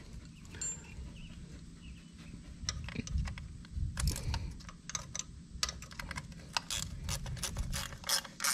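Light metal clicks and taps of a wrench on a water pump cover bolt as it is snugged down. The clicks start about three seconds in and come thickest in the second half, over a low steady hum.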